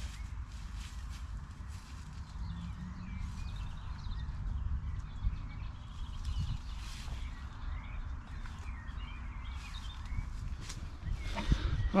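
Outdoor woodland ambience: a steady low wind rumble on the microphone, faint songbird chirps and footsteps swishing through long grass.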